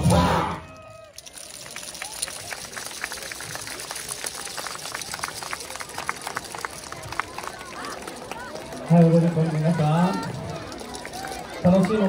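Dance music cuts off in the first second. Then come scattered sharp claps and clacks over light crowd noise, and a voice starts about nine seconds in.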